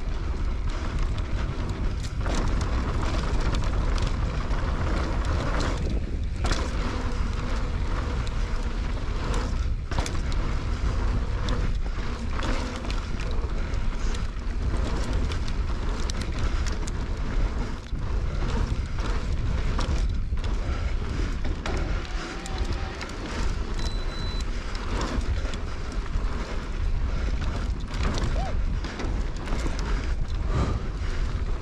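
Wind buffeting the camera microphone with a steady low rumble as an electric mountain bike is ridden fast downhill on a dry dirt trail. Tyres run over loose dirt, and frequent sharp clicks and knocks come from the bike rattling over bumps.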